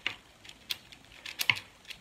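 A mini keychain speedcube's plastic layers being turned by hand, giving a few sharp, irregular clicks; the puzzle's mechanism is dry.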